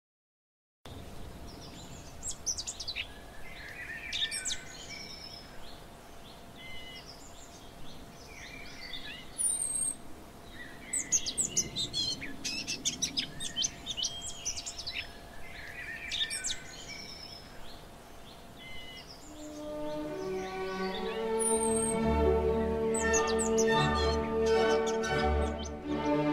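Small birds chirping and singing in repeated short calls and trills. Near the end, music with sustained string-like notes fades in and grows louder.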